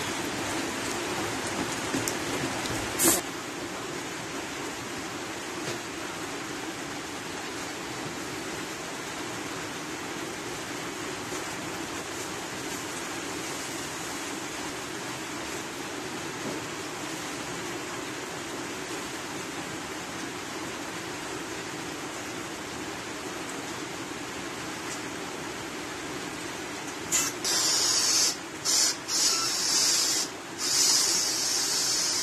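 Steady hiss of light rain, with a single sharp knock about three seconds in. Near the end come loud bursts of hissing gas, starting and stopping several times, as a balloon is filled from a gas cylinder's nozzle.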